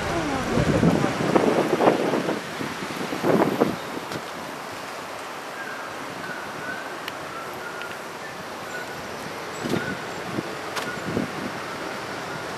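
Roadside street ambience: a steady hiss of passing traffic with wind on the microphone, and a few faint clicks and chirps in the second half.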